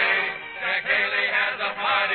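A vocal group singing with the orchestra in a 1938 radio-show musical opening, with the muffled sound of an old broadcast recording.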